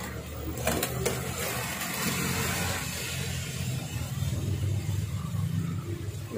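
A steady low hum, with a few sharp clicks about a second in.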